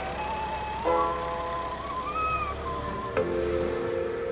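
Background music: a sliding lead melody over held chords, with a new chord coming in about a second in and again just after three seconds.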